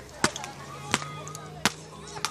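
A volleyball struck by hands, three sharp smacks about two-thirds of a second apart.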